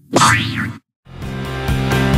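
The last of the Klasky Csupo logo's cartoon sound effects: a boing-like sound that slides up in pitch and back down, then cuts off suddenly. After a brief silence, background music with held notes and a steady beat starts about a second in.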